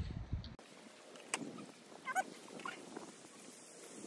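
Faint wet munching and slurping of people eating watermelon off the rind with their faces. There is a sharp click a little over a second in and a few short, faint squeaky calls around the middle.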